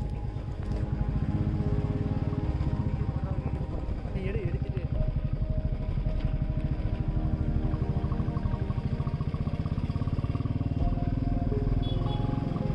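Royal Enfield Classic 350's single-cylinder engine running steadily under way, with an even, rapid exhaust beat.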